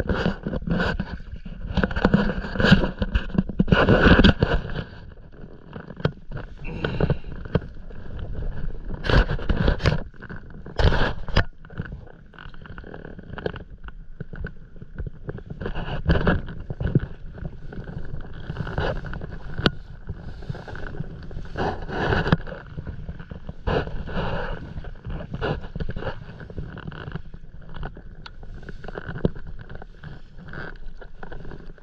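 Paddle strokes and water sloshing against a stand-up paddleboard: irregular splashing bursts every couple of seconds, loudest in the first few seconds.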